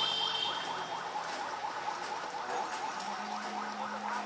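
Busy street traffic noise, with a brief high-pitched tone at the start and a steady low hum coming in about three seconds in.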